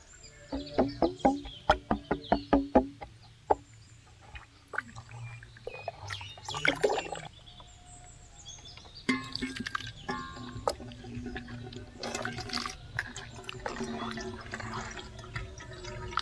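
Wet squelching, splashing and dripping as chopped watermelon pulp is scooped and squeezed by hand through a wire-mesh sieve into a steel bowl. Near the start there is a quick run of short pitched notes.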